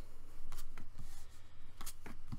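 Tarot cards being dealt one at a time onto a cloth-covered table: a few short, soft slaps and slides of card on cloth.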